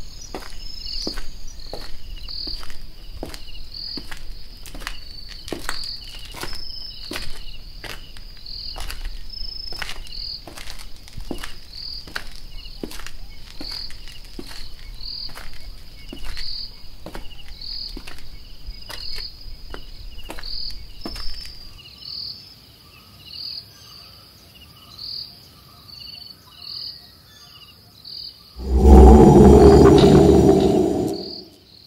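Crickets chirping in a night-time jungle: short, high, steady chirps repeating about every half second. Sharp regular clicks, about two a second, run alongside until roughly two-thirds of the way through. A loud low boom hits near the end.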